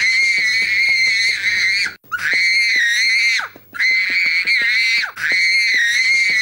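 A small boy screaming in a tantrum: four long, very high-pitched shrieks one after another, with a short breath between each.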